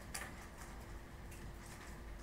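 Faint scattered clicks and taps of a stylus writing on a tablet screen, over a low steady hum.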